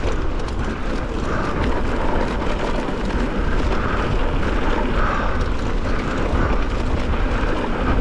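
Mountain bike riding fast along a dry dirt trail: heavy wind rumble on the camera microphone over steady tyre noise on loose dirt and gravel.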